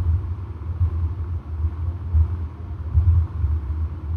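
A loud, uneven low rumble with no music or singing.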